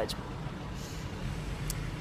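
Steady low rumble of urban road traffic, with two faint high ticks.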